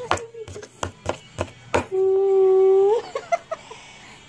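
Scattered sharp taps and slaps, with a voice holding one steady sung note for about a second, about two seconds in.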